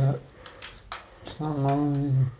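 A few sharp clicks of curtain hooks being fixed into a ceiling curtain track, followed by a drawn-out wordless voice sound held on one pitch.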